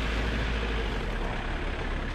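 Steady rushing noise of a swollen, fast-flowing stream, giving way about a second in to the steady noise of a Land Rover Freelander driving a wet dirt trail, heard from a camera mounted outside the vehicle.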